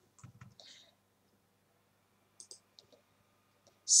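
Computer mouse buttons clicking: a few faint clicks near the start and a short run of clicks about two and a half seconds in.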